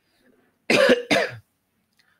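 A person coughing twice in quick succession, starting about two-thirds of a second in.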